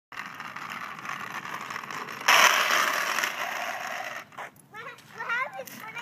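Plastic wheels of a Razor Flash Rider 360 drift trike rolling on asphalt, then, a little over two seconds in, a sudden loud scraping skid as the trike slides round, fading over the next two seconds.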